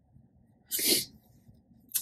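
A woman who is crying lets out one short, sharp sniffle, a sudden burst of breath lasting about a third of a second.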